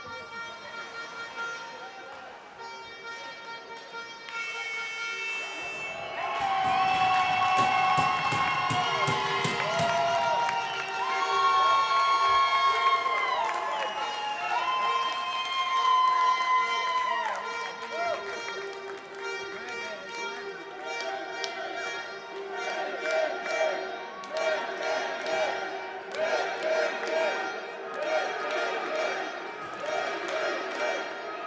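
Music over an ice rink's sound system, with spectators cheering and clapping in the stands. Long held notes come through the middle, followed by a quicker repeating tune near the end.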